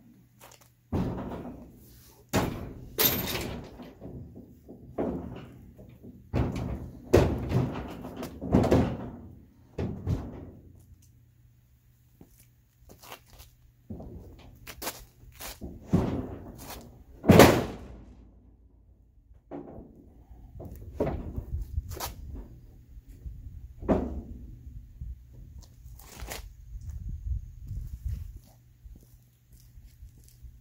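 Heavy pressure-treated wooden boards knocking and thudding against one another and against the aluminum trailer frame as they are set in place as trailer sides: a string of irregular knocks, the loudest about seventeen seconds in.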